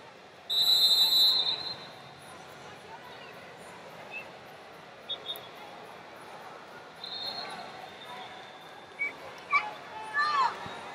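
A referee's whistle blown hard for about a second, then two shorter, fainter whistle blasts later, over the steady murmur of an arena crowd. Shouting starts near the end.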